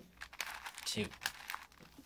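An 8x8x8 Rubik's cube having an inner slice turned by gloved hands: a quick run of dry plastic clicks and scrapes with a crinkly rustle.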